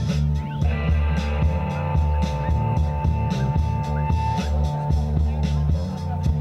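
Live rock band playing: electric guitars, bass and drum kit in a steady groove. A single long note is held over the band from about half a second in until about four and a half seconds.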